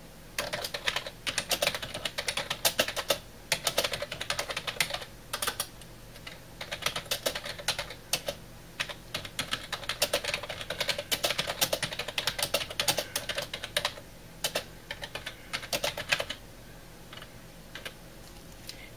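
Typing on a computer keyboard: irregular runs of quick key clicks with short pauses between words, stopping near the end.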